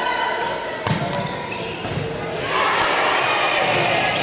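A volleyball rally in a gymnasium: a volleyball struck with a sharp smack about a second in, then players and spectators shouting and cheering, louder from about two and a half seconds in, with a few short clicks of shoe squeaks or ball contacts near the end.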